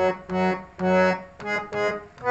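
Jamuna harmonium playing a melody one reed note at a time: about five short, separate notes that step up and down in pitch.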